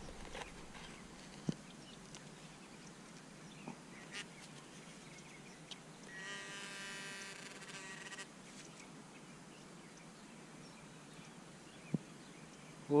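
Faint taps and scrapes of a hand digging tool working in soil, with a sharp click about a second and a half in. About six seconds in, a steady buzzing tone holds level for about two seconds, then stops.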